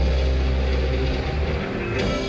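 Live rock band playing, with a held low bass note dominating and only faint parts above it. The bass drops away near the end.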